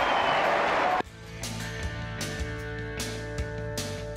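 Broadcast crowd noise that cuts off abruptly about a second in, replaced by background music: held sustained chords with a steady drum beat.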